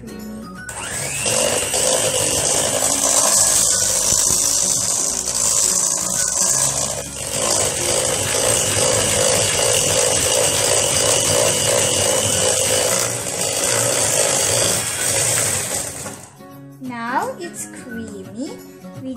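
Electric hand mixer running with its beaters in a steel bowl of cake batter, a steady whirring motor with a constant whine. It starts about a second in, dips briefly about halfway, and stops near the end.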